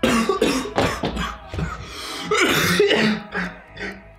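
A man coughing hard in a run of rough, irregular coughs and throat-clearing: a coughing fit right after a sip of coffee.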